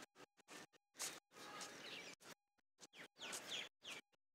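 Faint birds chirping in short falling calls over background noise outdoors, with the audio repeatedly cutting out to dead silence every fraction of a second.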